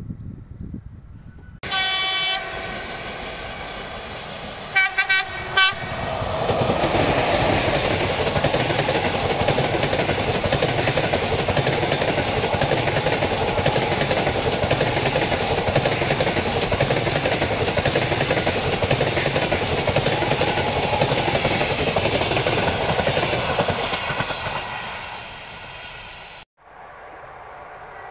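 A train horn blows once, then gives three short blasts. A locomotive-hauled passenger train then passes close by with a loud, steady rumble and wheel noise, fading away near the end.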